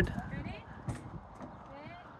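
Faint voices in the background, with a single sharp click about a second in.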